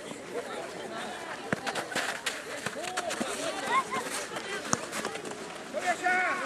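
Scattered shouts and calls of players and spectators at a youth football match, with a few sharp knocks.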